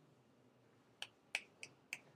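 Near silence, then four short, sharp clicks about a third of a second apart in the second half.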